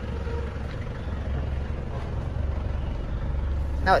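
A Ford Everest's 2.5-litre turbodiesel engine idling: a steady low rumble.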